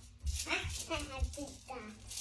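A child's voice speaking softly, with a couple of soft, low thuds.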